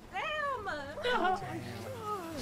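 A person crying, with high, wavering, falling wails.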